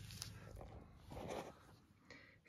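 Faint handling noise as a throttle body is picked up and turned by hand, mostly very quiet, with a slightly louder soft rustle about a second in.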